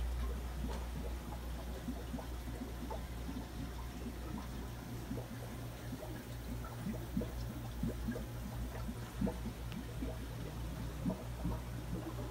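Aquarium water bubbling and trickling from air-driven sponge filters, with many small burbles over a steady low hum.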